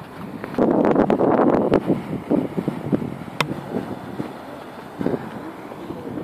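Wind buffeting a handheld phone's microphone outdoors, with a loud rough burst of rumble about a second in and scattered clicks from the phone being handled.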